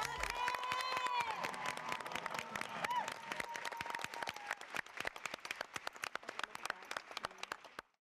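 Audience applause, dense clapping that gradually thins out and fades away near the end. A long held high-pitched voice sounds over the clapping for the first four seconds or so.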